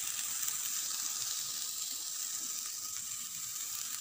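Grated beetroot and carrot sizzling in oil in a frying pan, a steady even hiss.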